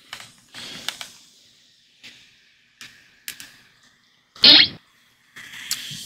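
A measuring spoon stirring a glass of carbonated Pepsi, giving a few light clinks against the glass over the soft hiss of the drink fizzing. Past the middle comes one short, loud vocal noise.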